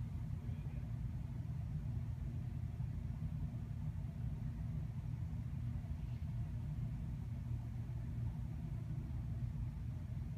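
A steady low rumble, even throughout with no distinct events.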